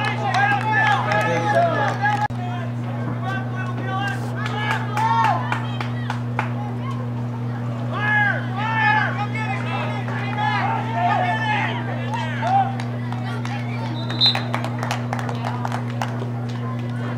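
Indistinct voices of spectators and coaches calling and shouting across an open field, in short bursts, over a steady low hum.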